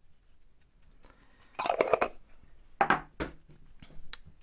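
Salt shaken from a container onto raw meat on a baking tray of potatoes: two short scratchy bursts, about one and a half and three seconds in, with a small click near the end.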